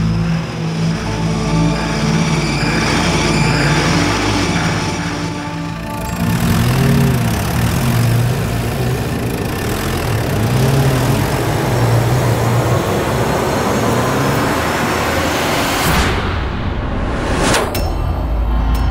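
Jeep engine running, its pitch rising and falling a few times, with background music over it.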